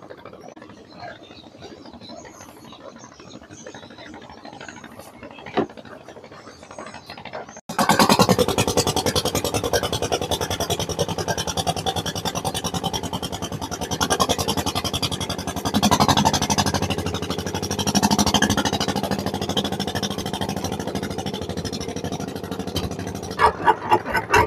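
Low ambient noise at first, then about eight seconds in a fishing boat's engine is suddenly heard running close by, a loud, rapid, even chugging that keeps on steadily.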